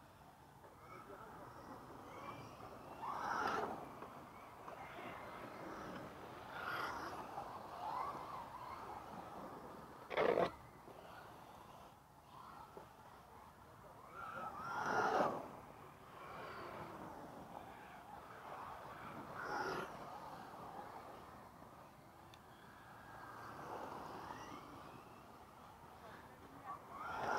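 Electric radio-controlled cars running on a dirt track, their motors and tyres on the dirt swelling and fading several times as they pass near, with one sharp knock about ten seconds in.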